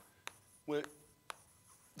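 Chalk knocking and scraping on a blackboard while writing: three short sharp taps, the first two close together near the start and the last about a second later.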